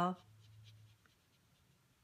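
Faint scratching of a water brush's tip stroking across watercolor paper, a few short strokes in the first second.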